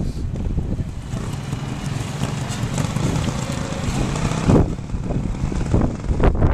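Classic trials motorcycle's engine running as the bike works its way down a steep dirt section, with a brief louder burst about four and a half seconds in.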